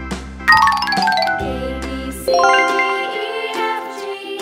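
A bright, tinkling chime sound effect heard twice, about half a second in and again just after two seconds, each ringing on as it fades, over light background music.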